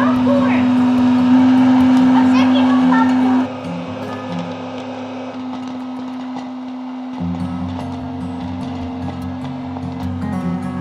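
Background music with a steady held note throughout, louder for the first few seconds, with voices in the first three or so seconds.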